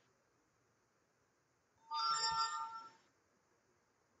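A short electronic chime, several steady tones sounding together, starting about two seconds in and fading out after about a second.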